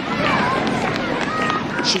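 Children running laps across a gym floor: a patter of footsteps under children's voices shouting and chattering.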